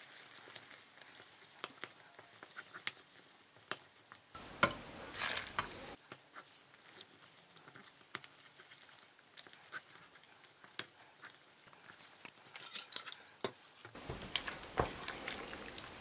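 A wooden spoon stirring a thick, wet mix of butter-roasted flour and sugar syrup in a hot stainless steel pan: faint, with many small irregular clicks and scrapes of the spoon against the pan and a low sizzle from the hot mixture.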